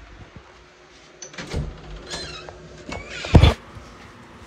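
Handling noise from a phone being carried, with a few short high squeaks in the middle and a loud thump about three and a half seconds in, the loudest sound.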